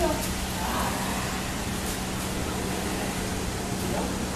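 Steady low hum and hiss of background noise, with faint, indistinct voices near the start and about a second in.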